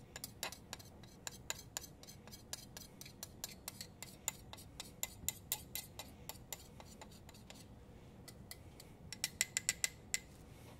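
Spatula tapping and scraping against the inside of a glass mortar, knocking powder out: a run of sharp clicks about two to three a second, with a quicker flurry of taps near the end.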